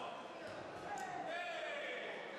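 Indistinct voices echoing in a large sports hall over a steady background hubbub, with a short sharp knock about halfway through.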